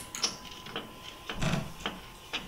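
Scattered sharp clicks and knocks of a screwdriver and plastic parts being handled inside the opened front of a Canon iR2420L photocopier, with a short scraping rub a little past halfway.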